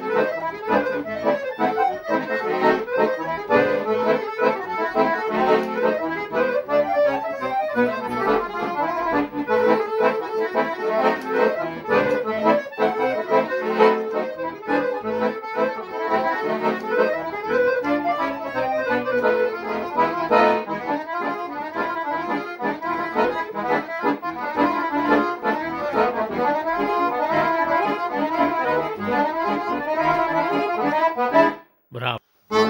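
Piano accordion played solo: a fast tune of quick running notes that carries on without a break.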